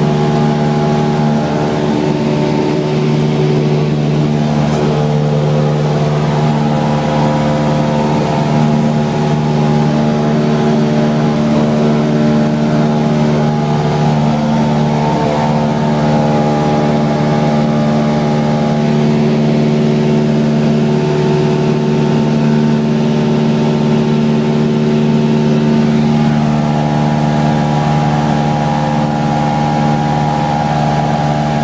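A light aircraft's piston engine and propeller running steadily at takeoff power during the climb-out, heard inside the cabin as a loud, even drone with no change in pitch.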